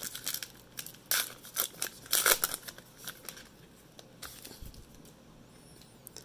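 Foil wrapper of a 2019 Topps Allen & Ginter baseball card pack being torn open and crinkled by hand, with the loudest tearing in the first two and a half seconds and fainter rustling after.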